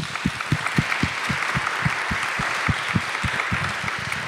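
Audience applauding steadily, with one person's hand claps close to the microphone standing out, about four a second.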